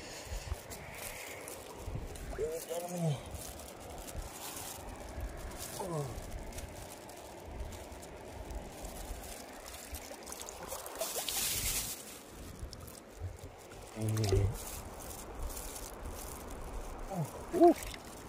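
Shallow stream water trickling and sloshing as fish are picked out of it by hand, with a brief splash about eleven seconds in. A few short grunts and murmurs come and go.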